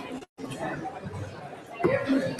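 Chatter of people talking in a large hall, broken by a brief total dropout of the sound about a quarter second in.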